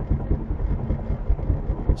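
Car driving at motorway speed, heard from inside the cabin: a steady low rumble of road and tyre noise with uneven low buffeting.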